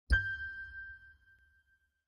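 A single bell-like ding struck once, with a low thud under it, ringing out and fading over about a second and a half.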